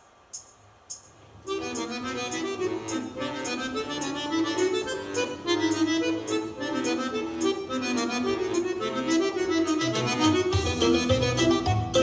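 Accordion-led folk music accompaniment with a steady beat, starting about a second and a half in after two sharp clicks. A deeper bass line joins near the end.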